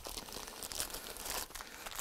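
Packaging being opened and handled: an irregular crinkling rustle.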